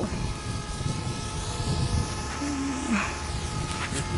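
DJI Mavic Air quadcopter drone hovering high overhead, a faint steady propeller hum, with wind rumbling on the microphone.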